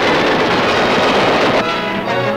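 Machine guns firing tracer rounds in a dense, continuous clatter, as on a 1940s newsreel soundtrack. About a second and a half in, it gives way to brass-led orchestral music.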